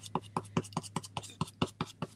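Stencil brush dabbing paint onto a stencil in quick, even taps, about four or five a second, over a steady low hum.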